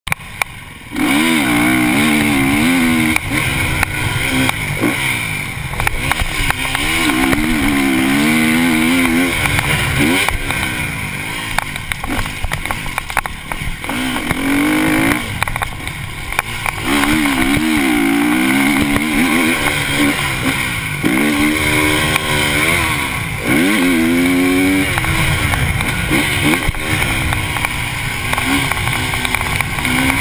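KTM motocross bike engine revving hard on a dirt track, the pitch climbing and dropping over and over as the rider works the throttle and shifts, under steady wind noise on the bike-mounted camera with occasional knocks from the track. It gets loud about a second in.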